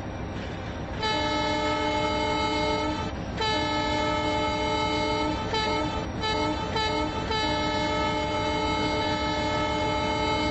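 Train horn sounding a chord over a steady train rumble: a long blast, a second long blast, a few short toots in the middle, then another long blast.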